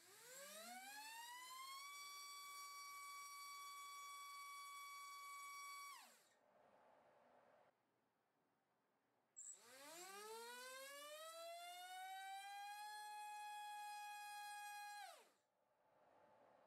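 MAD Racer 2306-2400KV brushless motor on a thrust stand, spinning 5-inch racing-drone propellers: two runs, each a high whine that rises in pitch over about two seconds, holds steady at top speed for about four seconds, then spins down quickly. The first run is with a DAL 5046 tri-blade on 3S. The second, after a short pause, is with an HQ 6045 two-blade on 4S.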